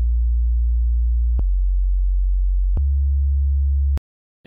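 Serum sub bass, a single pure sine wave with no attack or release, playing three low held notes: A-sharp, stepping down to F-sharp about a second and a half in, then up to C-sharp near three seconds. Each note change and the final cut-off gives a sharp click, the sign of the missing attack and release on the amp envelope.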